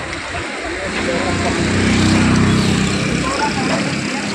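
A motor vehicle's engine passing close by, its hum swelling about a second in and fading a little after three seconds, over steady street noise.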